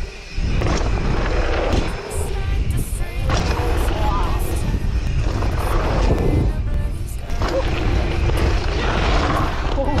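Wind rushing over a POV camera's microphone as a mountain bike rides a dirt-jump line, with tyre and suspension noise on the dirt. A short shout of "Oh!" comes right at the end.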